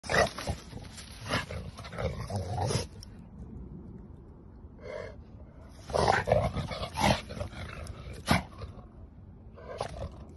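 American Bully dogs play-fighting, growling in bursts. There is a lull in the middle with one short high cry about five seconds in, then more growling, and a sharp click just after eight seconds.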